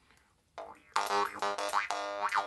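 Jaw harp twanged: a buzzing drone on one pitch, with 'boing' sweeps of overtones rising and falling through it, starting about half a second in.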